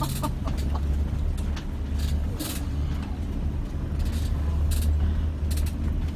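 Steady low rumble of a vehicle driving over a rough, bumpy road, heard from inside, with sharp knocks and rattles every second or so as the tires and suspension take the bumps.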